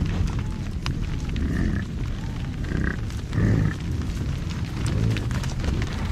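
American bison grunting close to the microphone, with one louder, drawn-out grunt about three and a half seconds in, over a low rumble and scattered clicks from hooves and the animals brushing against the camera.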